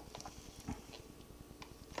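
Faint, scattered clicks and scrapes of a small metal dental tool working in a glass bowl of wet water putty, with one soft low knock a little under a second in.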